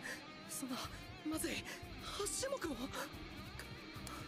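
Anime soundtrack played back quietly: a character's voice speaking Japanese over background music.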